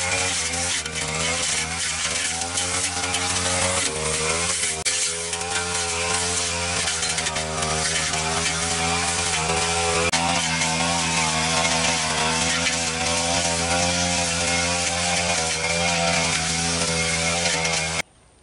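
Backpack brush cutter's small engine running steadily at high speed while its cutting head slashes through weeds and woody undergrowth, the pitch wavering slightly as it bites into the growth.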